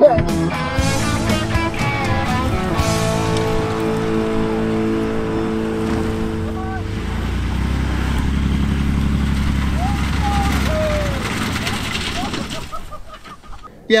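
Background music with guitar. From about seven seconds in, a low engine rumble of two pickup trucks straining under load in a tug of war comes in for about four seconds: a Jeep Gladiator's 3.6 V6 in four-low against a 1990 Ford F-150's 4.9 (300) inline-six. It fades out near the end.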